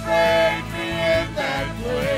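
A mixed vocal trio of two men and a woman singing a slow gospel song through microphones, holding long notes over instrumental accompaniment.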